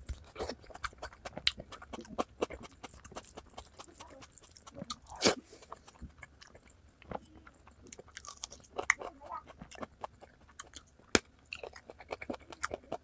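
Close-miked chewing and biting of curried chicken feet, with quick irregular mouth clicks and smacks. One louder mouth sound comes a little before the middle, and a sharp click comes near the end.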